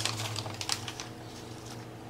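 Nutritional yeast flakes poured from a plastic pouch into a plastic measuring spoon: a few light rustles and ticks in the first second that fade away, leaving a low steady hum.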